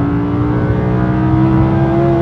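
The Audi R8 V10 Plus's 5.2-litre naturally aspirated V10, heard from inside the cabin, accelerating with its note rising slowly and steadily.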